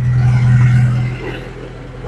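A motor vehicle's engine running close by, a steady low hum that is loudest in the first second and then fades.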